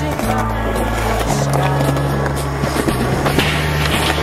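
Skateboard wheels rolling on rough concrete, with sharp clacks of the board near the end, over a music track with a sustained bass line.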